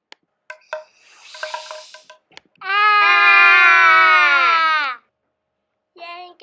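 A child's voice holding one long, loud cry for about two seconds, its pitch sliding down as it ends, after a few clicks and short sounds in the first two seconds.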